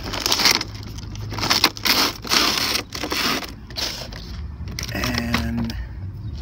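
Cardboard box and plastic packaging rustling and scraping in irregular bursts as a power inverter is pulled out of its box by hand. The handling quietens over the last couple of seconds.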